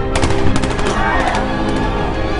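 A rapid burst of automatic rifle fire, a quick run of shots in the first second and a half, over film-score music.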